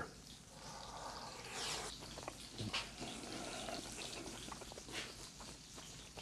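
Quiet room noise with a few soft clicks of a metal utensil touching cookware.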